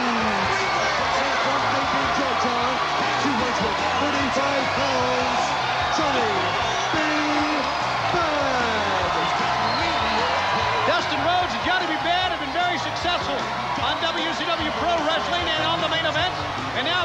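Wrestling entrance music playing over arena crowd noise, with many short high-pitched shouts and whistles rising from the crowd from about eleven seconds in.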